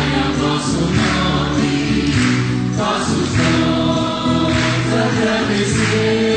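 Choir singing a church hymn in long held notes that move from one sustained pitch to the next.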